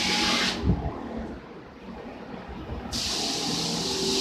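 Portable 12 V bucket pressure washer spraying water from its spray-gun lance into its plastic bucket with a steady hiss. The spray cuts off about half a second in, followed by a low thump, and comes back suddenly about three seconds in.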